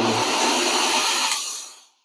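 Electric drill running steadily as it turns the threaded-rod cam shaft that shakes the sifter's screens; the sound dies away near the end.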